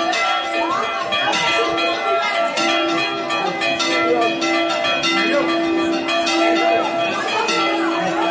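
Several church bells in a belfry rung by hand, struck in quick succession in a continuous rhythmic peal, with overlapping strikes and a steady ringing tone carrying underneath.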